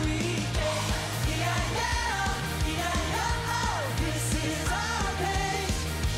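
Live pop-rock band: a male voice singing over electric guitars, bass guitar, drums and keyboard, with a steady beat.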